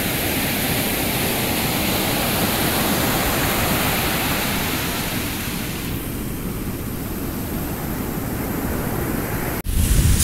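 Ocean surf breaking and washing up a beach, a steady rushing noise. It cuts off abruptly just before the end.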